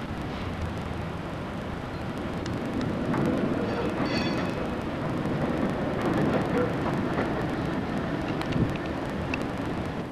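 Steady outdoor rumble and hiss on a camcorder microphone, with scattered clicks and a brief high squeal about four seconds in.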